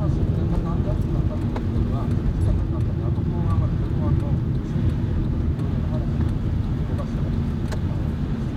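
Steady in-cabin rumble of a car's engine and tyres on a snow-covered road, with a few sharp ticks. A man's voice from a broadcast talk on the car audio is faintly heard under it.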